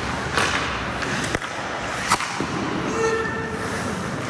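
Hockey pucks being shot with a stick and striking the goalie's pads and the boards, a handful of sharp cracks with the loudest about two seconds in, over a steady scrape of skates on the ice. A short steady tone sounds about three seconds in.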